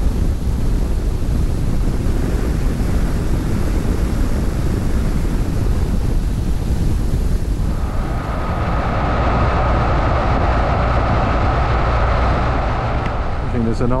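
Motorcycle on the move: steady wind rush over the microphone over the low running of the engine and tyres. About eight seconds in, a steady higher whine joins.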